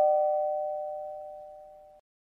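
Two-note ding-dong doorbell chime ringing on and fading away, then cut off abruptly. It is the sign of someone at the door.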